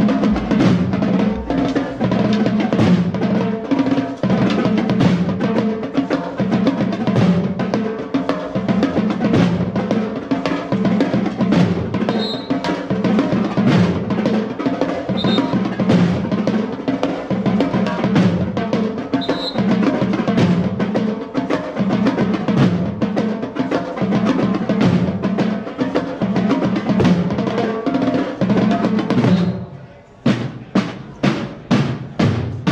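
School marching drum corps playing a rapid, steady drum cadence, a set of five tenor drums among the drums. The drumming breaks off just before the end.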